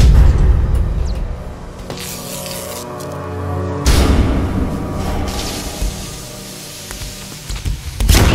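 Dramatic, tense film score with deep booming hits: one at the start, then held tones, then a second heavy hit about four seconds in.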